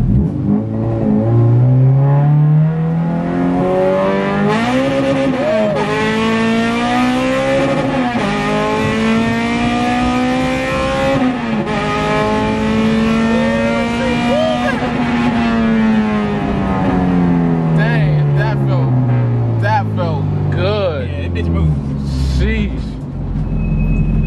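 Honda K20/K24 four-cylinder engine of a K-swapped Acura Integra at full throttle, heard from inside the cabin: the revs climb hard through the gears with several upshifts, then fall away steadily over the last few seconds as the car comes off the throttle.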